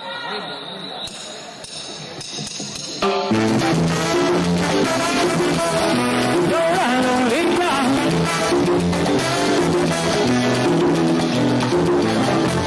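A live salsa band starts a tune about three seconds in, after a low murmur of voices in the hall, and then plays on at full volume with a steady, repeating bass and piano pattern.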